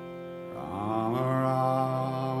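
Devotional mantra chanting over a sustained drone. A singing voice comes in about half a second in and holds long, steady notes.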